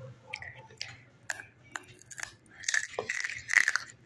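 Crunchy chewing of a rolled tortilla chip (Doritos Dinamita), a series of short crackly crunches that bunch into a denser, louder run of crunching near the end.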